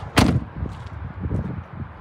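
A 2014 Ford F-150 pickup's door shut with a single sharp bang about a fifth of a second in, followed by softer low thuds.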